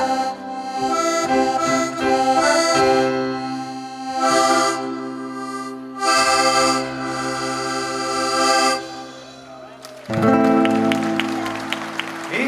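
A small accordion playing solo: held chords under a melody, in phrases with short dips between them. Near the end, after a quieter held chord, a louder passage begins.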